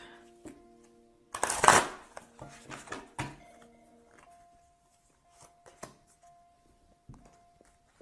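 A deck of tarot cards being shuffled: one loud rustling riffle lasting under a second, about a second and a half in, then a few light clicks of the cards, over soft background music of sustained held notes.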